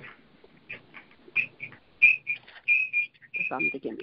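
A run of short, high chirping whistles, about a dozen in three seconds, coming at uneven intervals.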